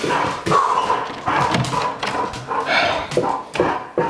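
A pet dog making excited greeting noises close to the microphone, in a string of short bursts.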